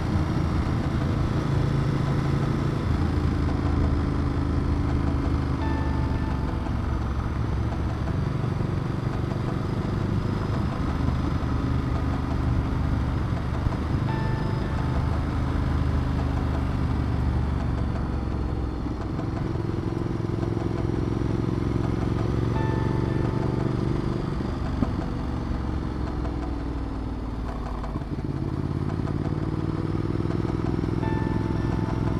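Ducati Multistrada 1200's L-twin engine running steadily as the bike rides a winding downhill road. The engine note falls and then picks up again twice, about two-thirds of the way through and near the end, as the throttle comes off and back on through the corners.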